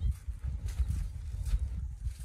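Palomino horse walking on arena sand under a rider, a few hoofbeats heard over a continuous low rumble.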